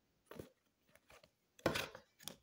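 A deck of tarot cards being shuffled by hand: a few short, soft card rustles, with a louder swish of sliding cards near the end.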